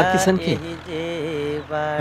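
A man's voice drawing out long held tones in a chant-like drawl rather than ordinary speech, with a short falling glide at the start and brief breaks between the held notes.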